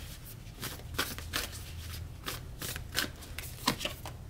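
Oracle cards being shuffled and handled: an irregular run of quick flicks and taps.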